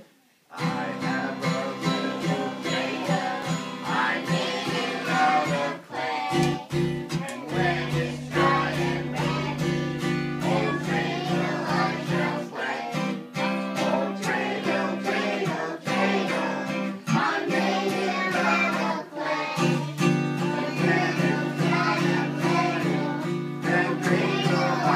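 Acoustic guitar strummed in a steady rhythm, with voices singing a song along to it, starting about half a second in.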